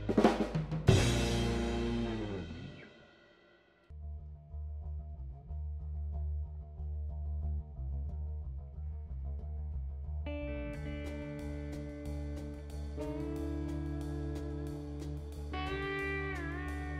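Live blues band: a song ends on final drum and chord hits that ring out and fade almost to silence. About four seconds in a slow electric bass line with drums starts the next song, and about ten seconds in a lap steel slide guitar joins with long sliding notes.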